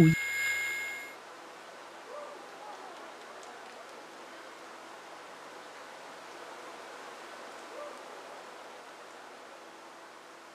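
Quiet, eerie stage soundtrack of a horror dance piece: a high ringing chord dies away in the first second, leaving a faint steady hiss with a couple of faint short sounds about two and eight seconds in.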